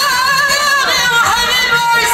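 Amazigh Ahidous folk singing from a stage troupe, amplified through loudspeakers: a high sung line held and wavering in pitch.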